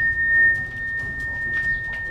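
A steady, high, pure ringing tone, held without change.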